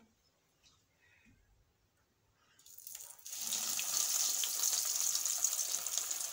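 A breadcrumb-coated bread samosa goes into very hot oil and sizzles. Near silence for the first two and a half seconds, then the frying hiss comes on suddenly and holds steady.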